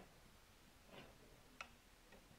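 Near silence: room tone with two faint clicks, a soft one about a second in and a sharper one near the end.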